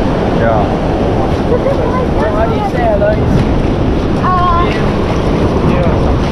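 Wind buffeting the microphone over surf breaking on a rock reef, with brief shouts of voices in between.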